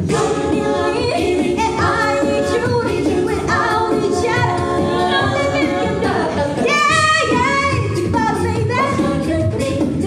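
A cappella group singing amplified through microphones: a female lead voice over close backing harmonies, with no instruments. About seven seconds in the lead sings a high bending run.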